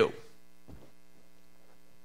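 Steady low electrical mains hum with faint evenly spaced overtones, with one small tick less than a second in.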